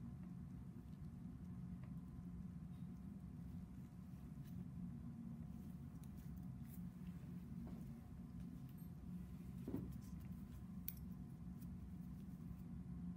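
Faint steady room hum with a handful of soft clicks from surgical scissors and forceps snipping and handling tissue while a scalp cyst is dissected out; the plainest click comes nearly ten seconds in.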